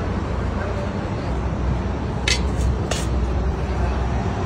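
Steady low rumble of street traffic, with two sharp clicks a little over two and about three seconds in: a metal spoon knocking against a clay bowl while ground dried shrimp is spooned out.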